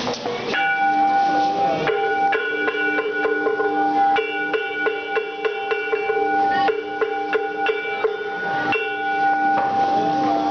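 Metallic percussion with steady bell-like ringing tones, struck rapidly several times a second; the ringing pitch set changes abruptly every couple of seconds.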